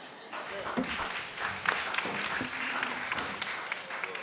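Audience applauding, starting a moment in, with a few voices mixed in.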